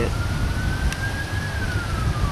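A distant siren wailing, one slow rise and fall in pitch, over a steady low rumble of wind or traffic.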